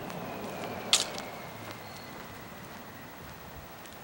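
Footsteps on an asphalt road with one sharp click about a second in.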